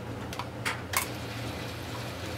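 Three light clicks, a few tenths of a second apart, from handling a homemade model-railroad power-controller box as its speed knob is turned, over a low steady hum.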